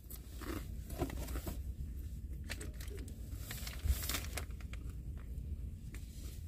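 Eating in a truck cab: soft chewing and scattered small clicks and crinkles of a plastic wrapper being handled, over a low steady hum.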